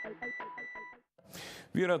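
Electronic TV title jingle with a beeping synth pulse, about five beats a second, that cuts off about a second in. After a brief silence a man starts speaking near the end.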